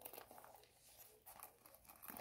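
Faint handling noise: light rustles and small clicks of a coated-canvas Louis Vuitton Mini Pochette and its gold chain being turned over in the hands.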